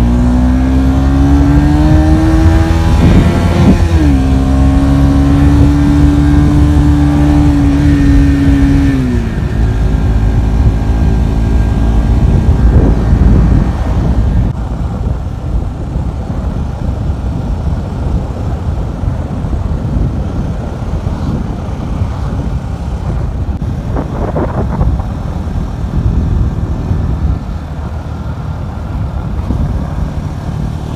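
Bajaj Pulsar NS200 single-cylinder engine running under way, holding a steady note with a short dip about four seconds in, then dropping off after about nine seconds. After that, rough wind and road noise buffeting the microphone dominates.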